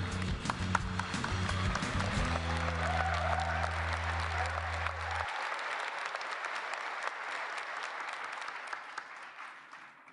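Audience applauding in a large hall over the closing music, a held low chord that cuts off about five seconds in. The applause fades away toward the end.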